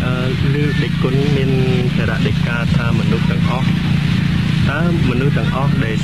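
A monk speaking in Khmer, giving a Buddhist dhamma talk, over a steady low hum in the recording.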